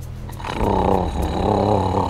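A guttural creature growl that swells in repeated waves, with music underneath.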